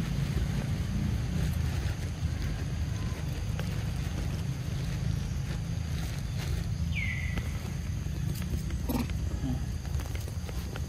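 A short, high animal call that drops in pitch and then levels off, heard once about seven seconds in, over a steady low rumble. A few faint clicks come near the end.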